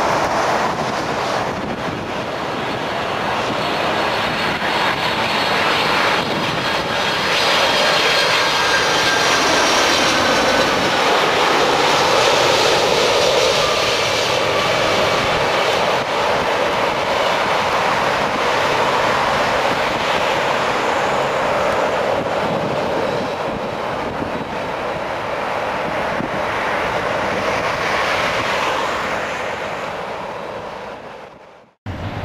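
Boeing 747-400ER's four General Electric CF6 turbofans on landing approach, a loud, steady jet engine noise. A high fan whine glides down in pitch as the aircraft passes, loudest about twelve seconds in, and the sound fades away at the very end.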